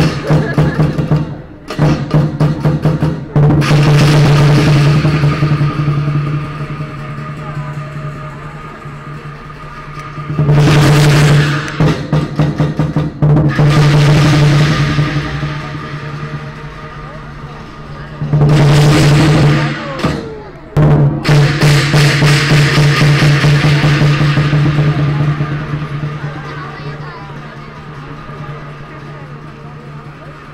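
Lion dance percussion: large Chinese drums with cymbals played in loud rolling bursts of rapid strikes, several times, over a steady low drone, easing off toward the end.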